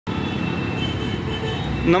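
Steady road traffic and engine noise, continuous throughout, with a man's voice beginning right at the end.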